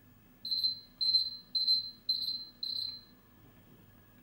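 A timer alarm beeping five times, high and evenly spaced about half a second apart. It signals that the one-minute countdown has run out.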